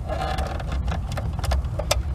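Plastic wiring-harness connectors being unlatched and pulled from the back of a car radio: a handful of sharp clicks and small rattles, most of them in the second half, over a steady low rumble.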